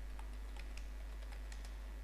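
Computer keyboard typing faintly, about ten quick key clicks as a word is typed in, over a steady low hum.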